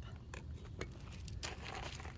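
Soft rustling and crackling with a few light clicks from a freshly cut tomato stem and its leaves being handled.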